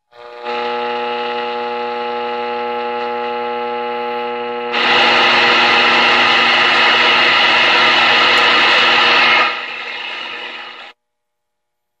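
A Zenith Trans-Oceanic H500 tube radio's speaker gives out a steady buzzing tone while being tuned. About five seconds in, louder static joins the tone, then falls back, and the sound cuts off suddenly near the end.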